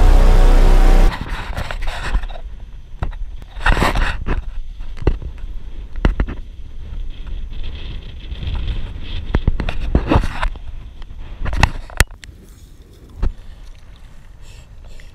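Wind buffeting a helmet-mounted action camera's microphone in gusts, with a low rumble and scattered sharp knocks as the kite rider moves. It starts about a second in, when loud intro music cuts off.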